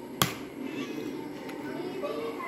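A metal spoon knocks sharply against a plate once, shortly after the start, while scooping up rice, over a low murmur.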